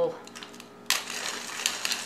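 Hand-turned pepper grinder grinding peppercorns, a dry, rapid crunching rattle that starts about a second in.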